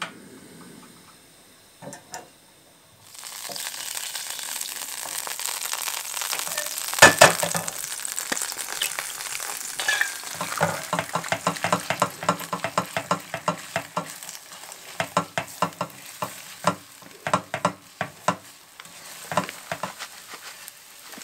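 Eggs sizzling in a frying pan on a portable butane stove. The sizzle starts about three seconds in, with a sharp knock a few seconds later. From about halfway, a spatula taps and scrapes quickly against the pan as the eggs are scrambled.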